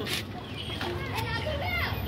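Children's voices calling and chattering in the background, high and rising and falling, mostly in the second half.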